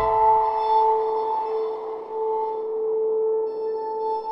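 Background music: long held notes with no beat.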